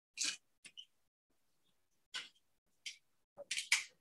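Scattered short rustles and clicks of objects being handled, one just after the start and a quick cluster near the end.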